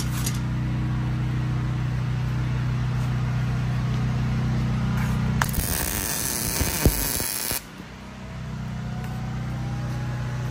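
A steady low hum. About five and a half seconds in, it gives way to about two seconds of loud, crackling MIG welding arc hiss with a sharp click near the end, after which the hum slowly returns.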